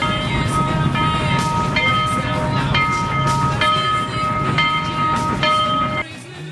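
Train sound effect cut in abruptly: a rumbling train with several held horn-like tones that change about once a second, stopping suddenly. Rock music continues underneath.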